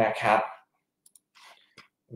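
A short spoken phrase, then a few faint, sharp clicks about a second in and again near the end.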